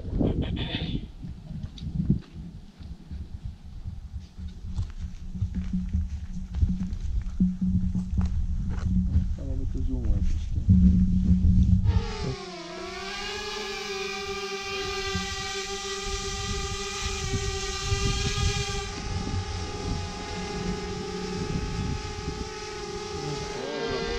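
Small quadcopter drone's propellers spinning up about halfway through, the pitch dipping then settling into a steady, high multi-toned whine as it lifts off and hovers.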